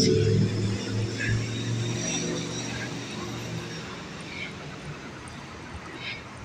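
Low, steady engine hum with street noise, loudest at first and fading gradually over several seconds as it moves away.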